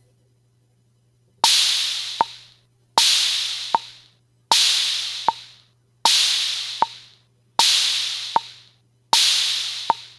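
Drum machine loop at 78 bpm starting about a second and a half in: a sampled bongo taps on every beat while an open hi-hat rings out on every second beat, each hi-hat fading over about a second. This is the pulse in quarter notes against a sound held for two beats, that is, half notes.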